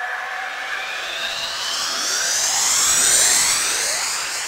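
A rising synth sweep in an electronic drum and bass track: many tones glide upward together and slowly grow louder, with no beat underneath.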